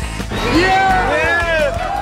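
Several voices shouting "yeah" in rising-and-falling cheers over background music, starting about half a second in.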